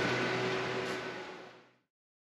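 A sustained background sound with a low hum and a few steady tones fading out over about a second and a half, then dead silence.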